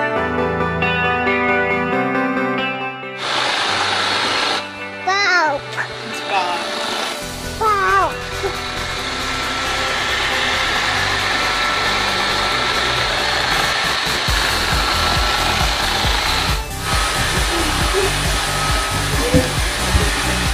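Guitar music for the first few seconds cuts off abruptly, giving way to a bObsweep PetHair robot vacuum running with a steady rushing noise and a thin, even whine. A few high, sliding voice-like sounds rise and fall over the machine noise a few seconds after the cut.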